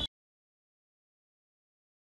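Complete digital silence: the sound cuts off abruptly right at the start, after the last clipped syllable of a man's speech.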